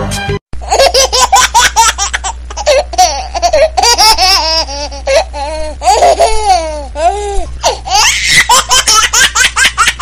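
A person laughing loudly in high-pitched, rapid fits with short pauses, starting abruptly after a brief silent gap about half a second in. A steady low hum lies under the laughter.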